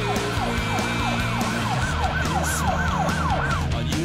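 A siren-like yelping tone, rising and falling about three times a second, over background music with a steady low bass.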